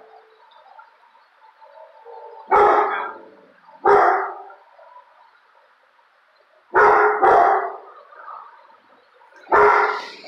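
A dog barking in five loud barks: single barks about two and a half and four seconds in, a quick double bark about seven seconds in, and one more near the end.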